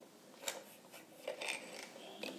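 Faint handling noise from a wall fan motor being taken apart: a sharp click about half a second in, then a few smaller clicks with light scraping as the rotor and its shaft are drawn out of the stator.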